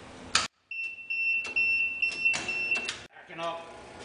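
A 12-volt alarm buzzer on a PLC trainer sounding a steady high tone for about two seconds: the start-up warning that the machine is about to run. Sharp clicks come before and during the tone.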